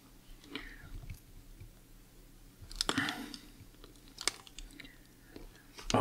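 Flat-blade screwdriver being forced against a tamper-proof slotted screw in a small plastic night-light housing: faint, irregular scraping and creaking with a few sharp clicks of metal on the screw and plastic.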